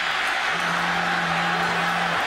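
Stadium crowd noise during a live football play: a dense, steady roar. About half a second in, a single low note starts and is held steadily for about a second and a half.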